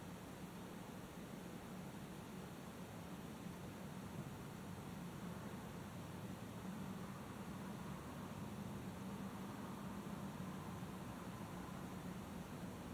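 Faint steady low hum and hiss inside a parked car's cabin, with no distinct events.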